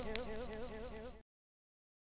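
Final held note of an electronic music track: a buzzing synthesizer tone whose pitch wavers rapidly up and down, fading and then cutting off abruptly about a second in.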